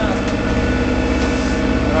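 A Bavaria 30 Cruiser sailboat's inboard diesel engine running steadily under way, heard inside the cabin below deck.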